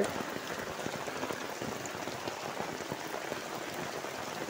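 Rain falling steadily on standing floodwater: a continuous hiss with a dense scatter of small drop ticks on the water surface.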